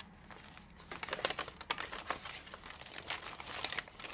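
Paper pages of a handmade journal being turned and handled, rustling and crinkling in small irregular bursts from about a second in.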